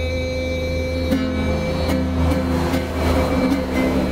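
A man singing one long held note while strumming a ukulele; the note fades out about halfway through as the strummed chords carry on. A steady low rumble runs underneath.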